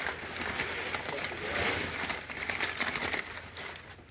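Crumpled newspaper packing rustling and crinkling as it is pulled off a figurine, a continuous run of small crackles.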